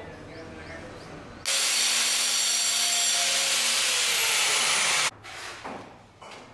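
A power tool running for about three and a half seconds, starting and stopping abruptly, with a faint high whine that falls slowly in pitch in its second half.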